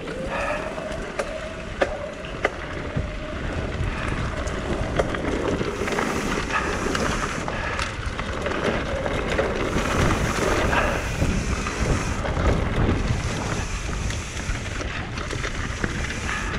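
Mountain bike riding fast down a dirt singletrack: wind rushing over the microphone over the rumble of tyres on dirt and dry leaves, with sharp clicks and rattles from the bike.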